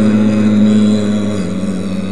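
A male Quran reciter holds one long, steady note on a vowel, amplified through a loudspeaker. About one and a half seconds in, the pitch steps down slightly and the note carries on more softly.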